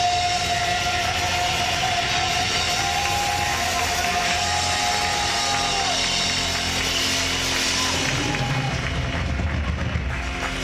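Live band playing loud rock-style worship music, with a long held high note over the band for the first six seconds.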